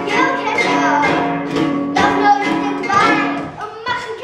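Children's acoustic guitars strummed about once a second, with a child's singing voice over the chords; the playing briefly thins out near the end.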